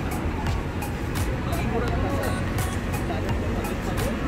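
Busy outdoor evening ambience: a steady low rumble of traffic with faint voices and background music, and short sharp ticks every half second or so.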